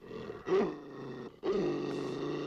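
Dog growling, with two louder snarls about half a second and a second and a half in.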